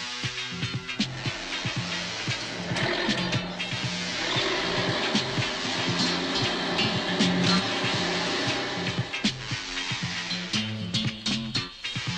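Upbeat background music with a steady drum beat and a moving bass line.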